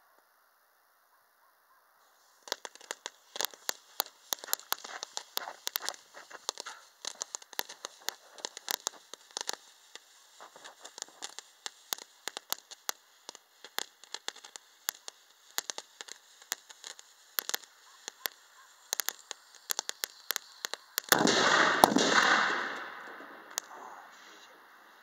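Lit fuse on a black powder cannon sputtering and crackling with rapid irregular pops for nearly twenty seconds, then a loud cannon blast near the end that fades over about two seconds.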